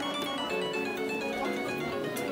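Children's electronic toy keyboard playing a simple plinky electronic melody through its small speaker.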